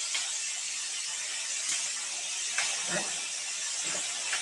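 Computer mouse clicking a few times, faint and short, over a steady hiss of microphone noise.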